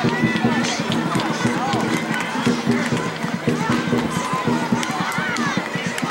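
Many voices of spectators, children and adults, shouting and calling out over one another outdoors, with music playing in the background.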